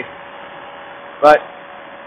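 A steady, low hiss with a faint hum: the paramotor's running engine and the wind, mostly suppressed by a noise-cancelling Bluetooth helmet microphone, so the sound is thin and phone-like. One short spoken word comes through a little past the middle.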